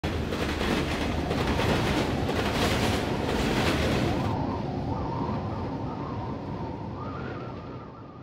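Freight train rolling past, a rumbling noise with a regular clatter of the wheels about once a second. About halfway through, the sound turns muffled and fades.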